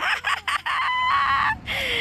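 A rooster crowing in one long call, a held note that falls away at the end, after a few short scuffing noises at the start.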